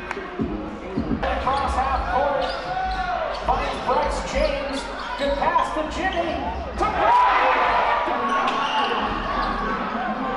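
A basketball being dribbled on a gym floor, repeated sharp bounces, with players' and spectators' voices around it.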